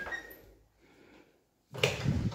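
Louvered closet doors being handled: a clatter at the very start, then a louder, sudden knock and rattle near the end.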